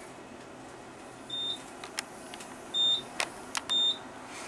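Three short, high electronic beeps from an Otis elevator car's signal, about a second and a half apart, with a few sharp clicks between them, over the car's steady ride hum.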